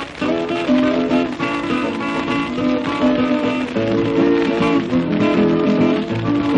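Instrumental break in an old sertanejo caipira recording: plucked acoustic guitars play a melody between sung verses.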